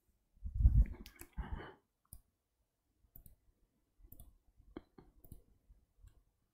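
A low thump and rustle of someone moving close to the microphone about half a second in, then a few faint, scattered clicks.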